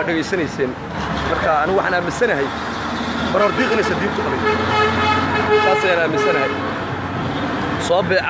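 A man talking over a low steady background hum, with a steady horn-like tone held for about three seconds in the middle.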